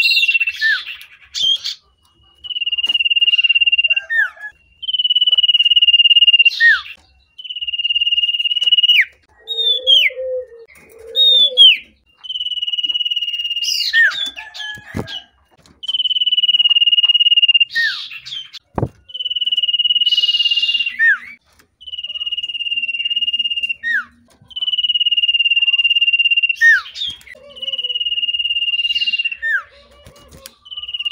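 Common iora (sirtu, cipoh) singing loudly, a male in breeding condition: a long steady whistle held for one to two seconds, each closed by a quick downward-slurred note, repeated about every two seconds with short scratchy chips between. Wing flutters sound as it moves about the cage.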